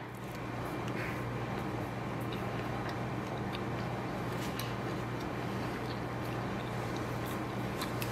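Quiet chewing of a Verb cookie butter energy bar with the mouth closed: a few faint clicks over a steady low hum.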